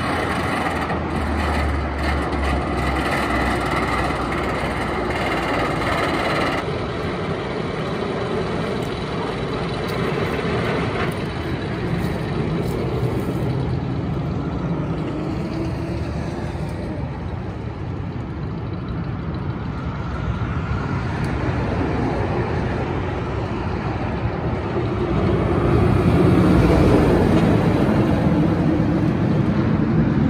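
Rocky Mountain Construction hybrid roller coaster train running the circuit on a test cycle: a steady rumble of the train on its steel track that grows louder near the end.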